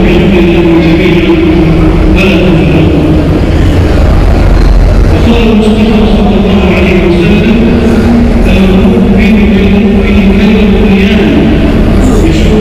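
A drawn-out chanting voice holds long notes that slowly waver and bend, over a loud, steady low rumble.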